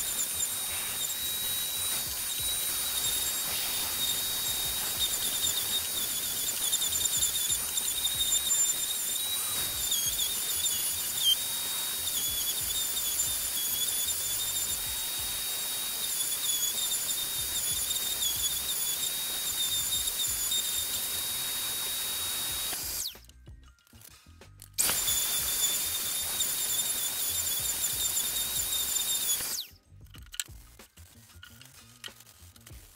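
DeWalt random orbital sander running with a steady high whine while sanding wooden table legs; it cuts out about three-quarters of the way through, starts again about two seconds later, and stops just before the end.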